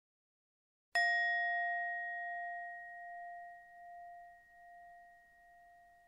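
A single struck meditation bell, hit about a second in and ringing on with a wavering, slowly fading tone. It serves as a cue marking the change to the next exercise.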